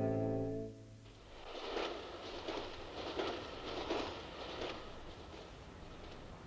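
Theme music ends on a held chord under a second in. A train on nearby railway tracks follows, its wheels making a rhythmic clatter of about six beats some 0.7 s apart, which fades to a steady low rumble near the end.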